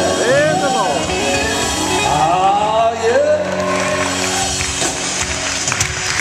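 Live gospel band holding a sustained closing chord, with a voice singing sliding runs over it; the held sound fades out just before the end.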